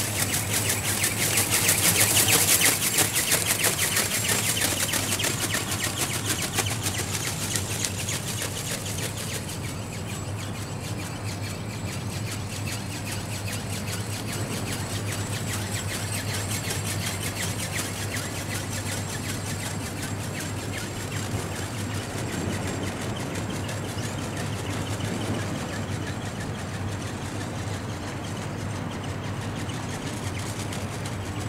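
Battery-powered flapping-wing ornithopter in flight, its motor, gear drive and wing beats loudest as it passes close in the first few seconds, then quieter as it flies farther away.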